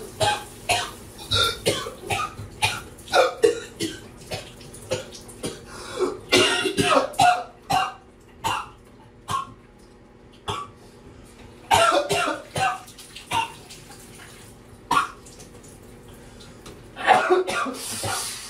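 A man coughing in repeated fits, each of several short, harsh coughs, with brief pauses between fits; the coughing comes from a bug in his throat. Shower water runs faintly underneath.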